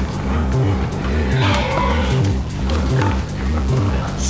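Background music with a steady pulsing low beat, with pig noises over it, loudest about a second and a half in.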